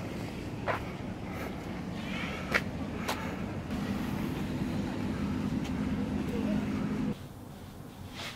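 Outdoor ambience with noise that sounds like wind and a few sharp knocks. About halfway through it gives way to a steady low hum, and the hum cuts off about a second before the end, leaving quieter room tone.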